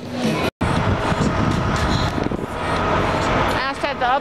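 Steady outdoor road-traffic noise from passing cars, after a brief dropout to silence about half a second in. A voice begins near the end.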